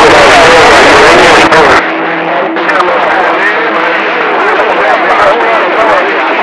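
CB radio channel audio: garbled, unintelligible voices from stations keying over one another, with a steady tone underneath. About two seconds in, the noisy full-range signal cuts out and a thinner, band-limited transmission takes over.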